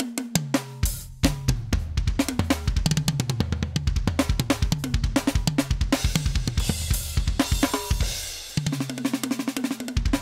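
Alesis Strata Prime electronic drum kit played through its sound module: a busy pattern of kick drum, snare, toms and cymbals, with a stretch of cymbal wash and a brief break shortly before the end.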